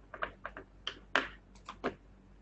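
Computer keyboard keys clicking: an irregular run of about ten quick keystrokes.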